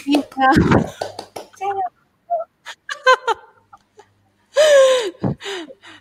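Several people laughing and exclaiming briefly over a video call, in short broken bursts. There is a brief low thump on a microphone about half a second in, and a louder burst of laughter near the end.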